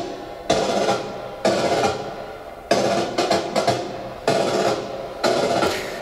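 Recorded drum interlude played back: drum and snare hits about once a second, each sharp strike followed by a long ringing decay.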